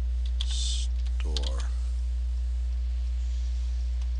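Typing on a computer keyboard: a few quick key clicks in the first second or so, over a steady low electrical hum. A brief mumbled word comes about a second and a half in.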